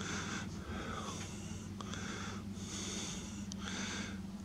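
A person breathing close to the microphone: faint, regular breaths about once a second, over a faint steady low hum.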